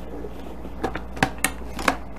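Plastic clicks and knocks of a food processor's lid being set onto the bowl and turned into place: four short, sharp clicks within about a second.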